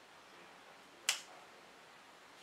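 A single sharp finger snap about a second in, against a quiet room.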